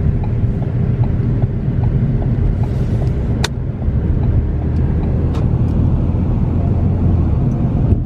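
Steady low rumble of engine and road noise heard from inside the cabin of a moving car. A faint regular ticking runs through the first half, and there is a single sharp click about three and a half seconds in.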